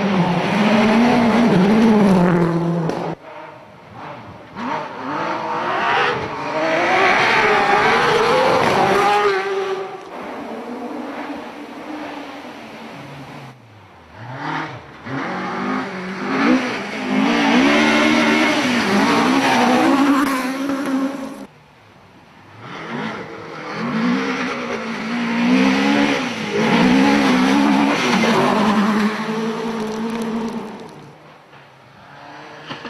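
Rally cars, among them a Ford Focus WRC and a Mk2 Ford Escort, driven hard one after another, their engines revving up and down in pitch through rapid gear changes. The sound cuts off abruptly between cars about three, thirteen and twenty-one seconds in.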